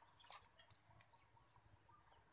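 Near silence with a few faint, short bird chirps scattered through it.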